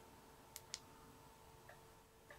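Two quick clicks of the TUNGENGE S15 keychain flashlight's recessed button about half a second in, then a fainter tick near the end, against near silence.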